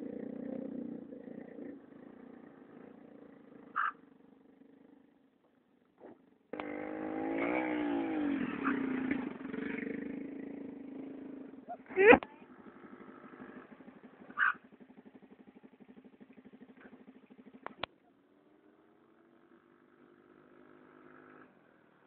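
Yamaha Mio scooter's small single-cylinder engine running and being revved, the revs rising and falling for several seconds in the middle, with a sudden loud burst about twelve seconds in and a steady pulsing run afterwards.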